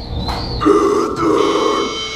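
Deathcore guttural vocals, a low rough growl through the PA that starts just over half a second in and breaks once, over a steady high ringing guitar tone.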